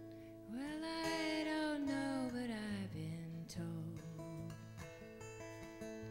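Acoustic guitar strumming with bass guitar in a slow folk song. A long sliding melodic note comes in about half a second in and bends down over the next two seconds.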